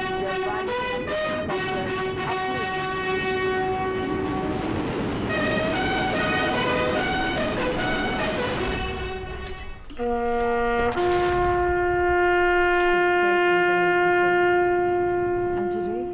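A bugle sounding a slow military call of separate held notes. About ten seconds in come two short notes, then one long note held for several seconds.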